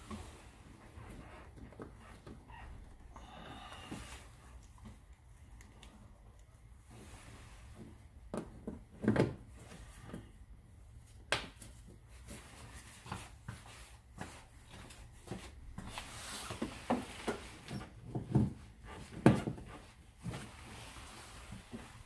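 Plastic push-in retaining clips and a plastic windshield cowl panel being pressed into place by gloved hands: scattered clicks and knocks with light plastic rustling. The loudest knocks come about nine and eleven seconds in and again a few seconds before the end.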